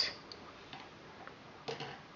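Quiet handling clicks of a plastic straw yarn guide and a wire threader being worked as yarn is pulled through: a few faint ticks, then a short quick run of clicks near the end.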